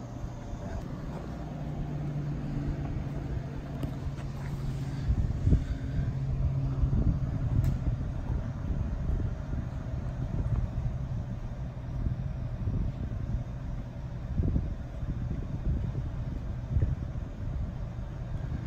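Steady low rumble of road traffic, with a low hum that fades out about halfway through.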